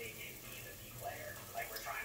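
Faint talk from a television playing in the room.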